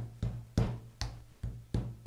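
Metal meat mallet pounding a thin slice of veal on a cutting board: a steady run of thuds, about two and a half a second, flattening the meat.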